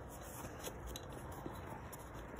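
Faint handling of a bikepacking feed bag's nylon strap and plastic buckle, a few soft clicks over a light steady hiss.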